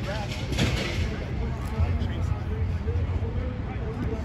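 Indistinct voices of people talking across a practice field, too far off to make out, over a steady low rumble. A brief clatter of sharp sounds comes about half a second in.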